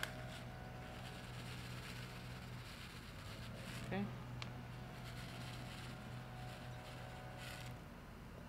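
A steady low mechanical hum, with a few faint rustles and soft clicks over it.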